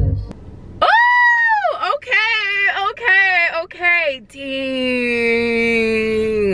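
A woman's voice singing wordless notes with no backing: a high note that rises and falls, a run of short wavering notes, then one long held lower note that sinks slightly at its end.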